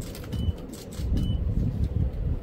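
Several sharp camera-shutter clicks and short high focus beeps as a memento handover is photographed, over a steady low rumble of room noise.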